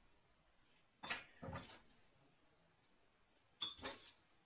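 Small metal hand tools being picked up and handled on a work surface: two short faint knocks about a second in, then a cluster of sharp metallic clinks with a brief high ring near the end.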